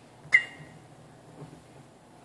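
A match dropped into a drinking glass of water to put it out: one sharp tap with a brief glassy ring, then a faint small tick about a second later.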